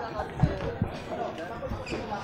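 Two dull thumps close to the microphone, about a third of a second apart, with voices chattering in the background.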